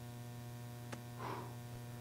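Faint steady electrical mains hum: a low buzz with a ladder of overtones, running unchanged. A small click a little before the middle and a soft brief hiss just after it.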